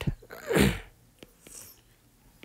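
A man sneezing once, a short sharp burst with a falling voice about half a second in, followed by a few faint clicks.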